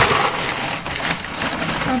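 Plastic snack packaging and a plastic bag crinkling and rustling as they are rummaged out of a cardboard box, with a sharp click at the start.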